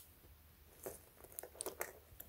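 Faint handling noises: a few soft clicks and rustles as hands pick up a smartwatch with a metal link bracelet.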